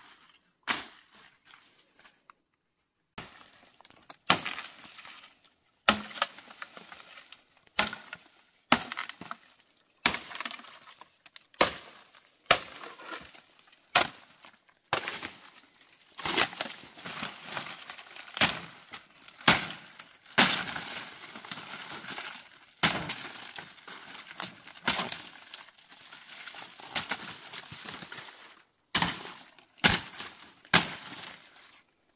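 Dry stalks and dead banana leaves being snapped and crushed by hand. It is a string of sharp cracks about once a second, with dry crackling between them that thickens in the second half.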